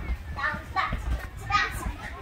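A child's high-pitched voice calling out twice without clear words while playing, with low knocks and rumble underneath.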